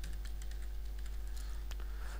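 Computer keyboard being typed on, a few faint, scattered key clicks as a short word is entered into a search box.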